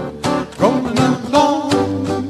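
Small acoustic band playing an upbeat ragtime tune: strummed acoustic guitar over upright string bass, with a washboard's scraped rhythm and a short rising melodic note about half a second in.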